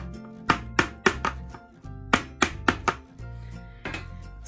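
A plastic jar filled with whipped soap tapped down on a hard surface to settle the soap: two quick runs of about four sharp knocks, then one more near the end, over background music.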